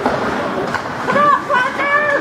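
Indistinct voices of people at an ice rink: chatter and calls that rise to raised voices in the second half, with a short sharp knock about three-quarters of a second in.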